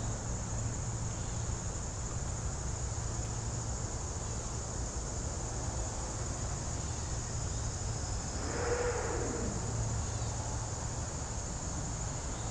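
Insects chirring in a steady high-pitched drone over a low outdoor rumble. About nine seconds in, a brief passing sound falls in pitch.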